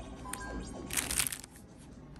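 Thin clear plastic packet crinkling as it is handled, with a click early and a louder crackle about a second in.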